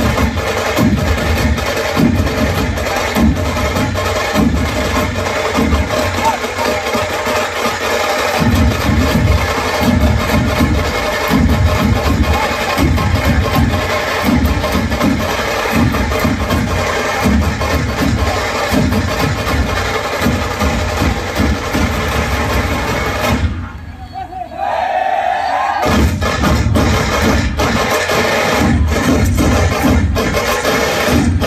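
A large troupe of folk drummers beating big barrel drums in a dense, loud rhythm, with steady sustained tones above the drumming. Near the end the drumming stops for about two seconds, then starts again.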